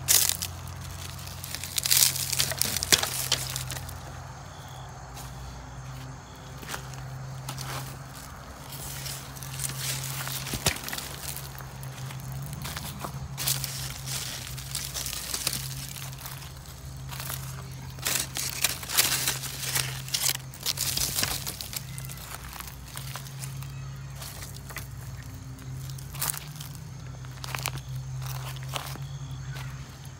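Cucumber vines with dry, dying leaves rustling and crackling, and soil crunching, as the plants are pulled up from the bed by gloved hands. The noise comes in irregular bursts, loudest at the start and about two-thirds of the way in, over a steady low hum.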